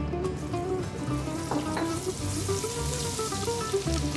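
Ginger sizzling in hot peanut oil in an electric wok as it is stirred with a wooden spoon, the sizzle growing louder about halfway through, over background music.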